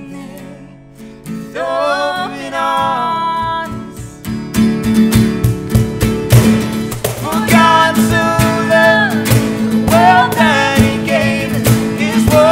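Live acoustic worship song: a strummed acoustic guitar, a cajon and voices singing. It starts soft and sparse, then about four seconds in the strumming and cajon beat fill out under the singing.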